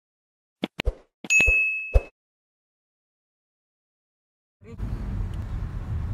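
Like-button animation sound effects: a few quick clicks and a bright, ringing ding lasting under a second, then a final click. After a silent gap, the low, steady rumble of a moving car's cabin starts near the end.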